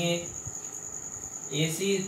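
A cricket chirring as one steady, high-pitched tone, with a man's voice briefly near the end.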